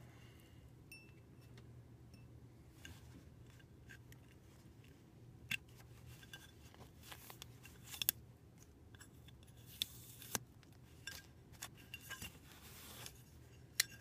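Faint, scattered clicks and short scratchy rustles as an etched aluminum plate is handled: the electrode leads are taken off and the electrical-tape mask is peeled away.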